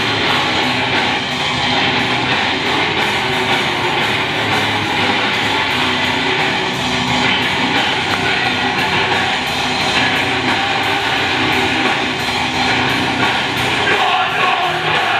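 Live rock band playing loud, distorted electric guitars over a drum kit, steady and unbroken, with fast, closely spaced drum and cymbal hits.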